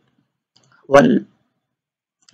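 A man says the single word "one" about a second in, with a few faint clicks around it, typical of a computer mouse's scroll wheel as the page scrolls.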